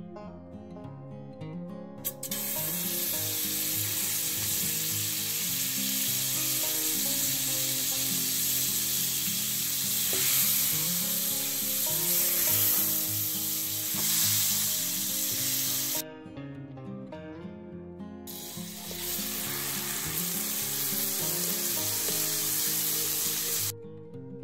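Butter sizzling as it melts and foams in a hot frying pan, with soft background music underneath. The sizzle starts about two seconds in, breaks off for a couple of seconds about two-thirds through, then comes back.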